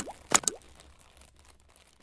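Sound effects for an animated logo: two short rising pops, each starting with a click, about a third of a second apart near the start.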